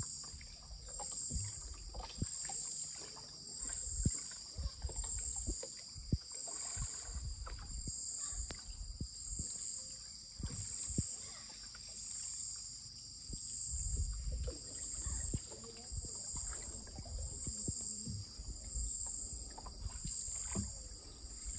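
Wooden canoes being paddled, with paddle strokes, low water sounds and occasional sharp knocks against the hull, under a steady high insect chorus that pulses about once a second.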